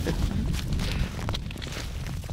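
Footsteps crunching through snow and dry corn stubble, an irregular run of short crackles as a person walks across the field.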